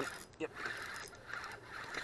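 Spinning reel being cranked to bring in a hooked small largemouth bass, a faint steady whir after a short spoken 'yep'.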